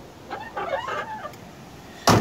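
A chicken clucking: a short run of calls about a third of a second in, fading by a second and a half.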